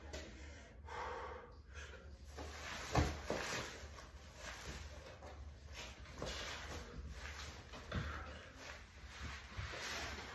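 A man breathing hard in repeated breaths while setting up and lifting a heavy sandbag. There are two dull thumps, about three seconds in and near eight seconds.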